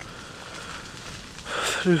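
A pause in a man's talk filled only by a faint, steady hiss of background noise, then his voice starts again about one and a half seconds in.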